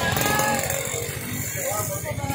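People talking at a market stall, with steady street and market noise behind them.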